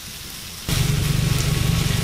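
Chopped vegetables (eggplant, peppers, zucchini, carrots) sautéing in oil in a frying pan: a steady sizzle that gets suddenly louder about two-thirds of a second in.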